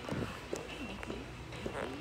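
Indistinct voices of people talking in the background of a large, busy store, with a few light knocks and clicks over the steady hum of the room.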